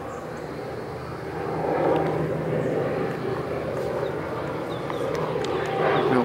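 A distant engine drone, swelling about a second in and then holding steady.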